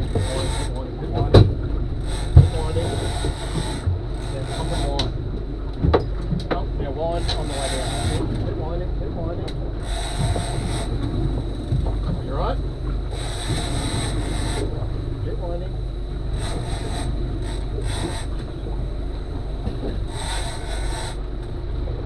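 Boat at sea with its engine running in a steady low rumble, wind and water around it, broken by repeated short bursts of high hiss and a few knocks from the deck.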